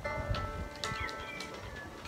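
Acoustic guitar being played: a chord struck at the start and another just under a second later, each left to ring.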